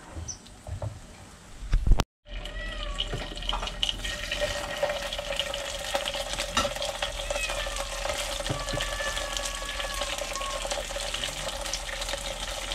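A few clicks and knocks of a metal spatula against a wok, then, after a cut about two seconds in, fish frying in hot oil in the wok with a steady sizzle and a few faint gliding whistles over it.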